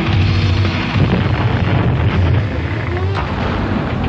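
Heavy rock music playing loudly, a dense, driving passage from a hard rock track.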